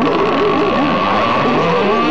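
Dark ride's on-ride soundtrack: layered eerie effects of several wavering, wobbling pitched voices or tones over a steady held note, running continuously at a constant level.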